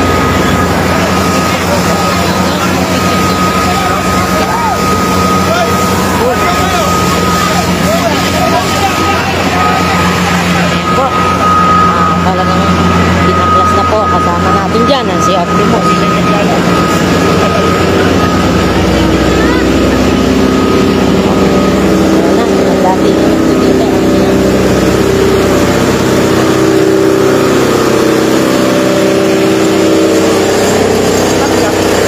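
Fire truck engine running steadily, with a thin steady whine over it for the first half and its note changing about two-thirds of the way through. People talk around it.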